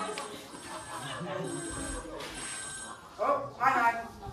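A telephone ringing twice near the end, two short rings in quick succession.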